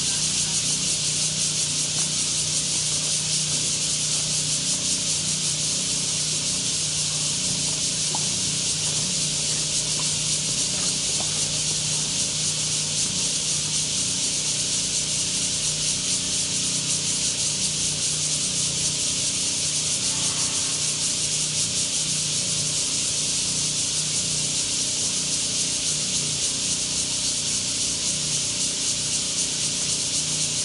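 Steady, loud high-pitched chorus of cicadas in the surrounding trees, unbroken throughout, with a faint low hum underneath.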